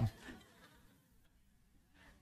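A man's voice trails off in the first half second, then near silence: faint room tone.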